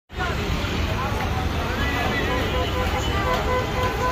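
Street noise: a steady low traffic rumble with indistinct people's voices in the background.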